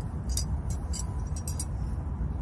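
Light metallic clinks, about five short jingles in the first second and a half, over a steady low background rumble.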